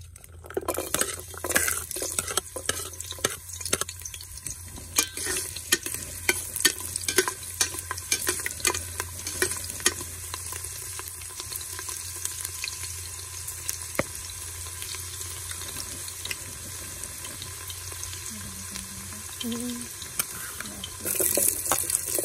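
Sliced garlic frying in hot oil in a steel pot: a sizzle thick with crackling pops for the first several seconds, settling into a steadier sizzle. Near the end the sizzle grows louder as sliced red onion drops into the oil.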